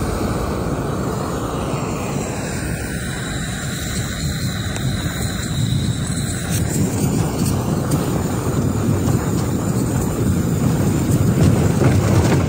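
Small backpacking gas canister stove burning steadily under a pot, a continuous even rushing noise, with wind rumbling on the microphone.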